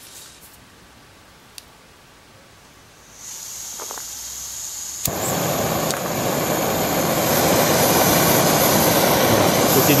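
Small Robens Fire Midge canister gas stove on a Campingaz valve cartridge. Gas starts to hiss about three seconds in, a sharp click comes about two seconds later as the burner lights, and the burning stove then runs with a steady rushing noise that grows louder as the gas flow is turned up.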